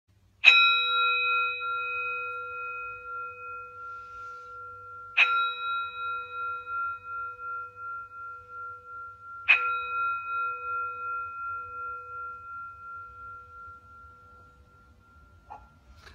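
Metal singing bowl struck three times with a wooden mallet, about four to five seconds apart. Each strike rings on in a wavering, pulsing tone of several pitches that slowly fades away.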